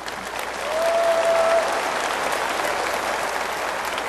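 Audience applauding, the clapping swelling in the first second and then holding steady.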